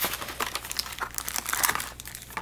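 Crinkling and rustling of card-pack packaging as hands pull foil booster packs out of their paper wrapping: a string of irregular, closely spaced crackles.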